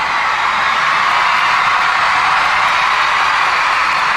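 A large audience cheering and screaming, a steady mass of high voices that grows slightly louder.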